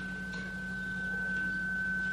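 A steady electronic whine held at one high pitch, over a low steady hum and faint hiss.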